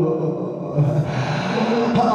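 A man's voice chanting an Arabic lament in long, held lines, drawing a sharp breath about a second in before the line goes on.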